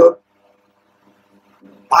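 A man's voice, his word trailing off just after the start, then about a second and a half of near silence with a faint steady hum, and speech resumes near the end.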